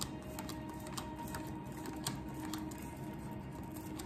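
Soft background music with faint, irregular light clicks of a deck of cards being thumbed through in the hand.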